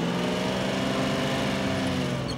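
Crane's engine running steadily, its pitch rising slightly and easing back.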